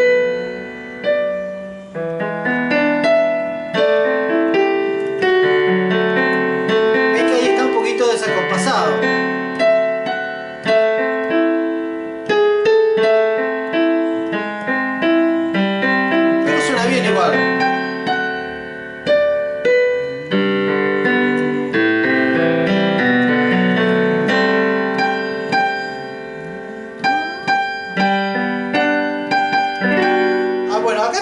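Yamaha digital piano playing a bolero: a right-hand melody over a flowing left-hand arpeggio accompaniment, with the melody notes kept apart from the arpeggio notes rather than struck together.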